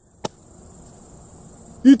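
Faint, steady high-pitched chirring of crickets in summer grass, with one sharp click about a quarter second in. A man's voice starts again near the end.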